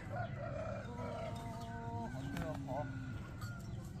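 A rooster crowing faintly in the distance: one drawn-out crow about a second in, followed by a lower held note.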